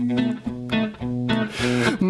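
Archtop guitar played alone in a chanson accompaniment, sounding a few short chords one after another.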